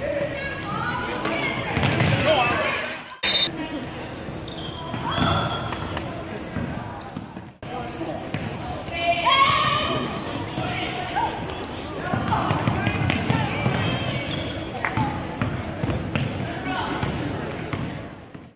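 Spectators' and players' voices echoing in a gymnasium, with a basketball dribbling on the hardwood floor. The sound breaks off abruptly twice.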